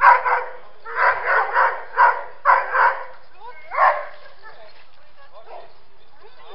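A dog barking in a quick series of about eight short barks over the first four seconds, then stopping.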